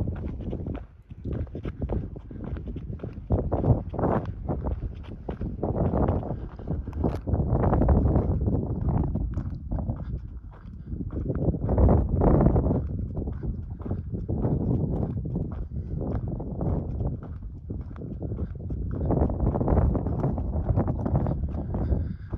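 Footsteps on a dirt and gravel trail at a steady walking pace, with wind rumbling on the microphone in gusts.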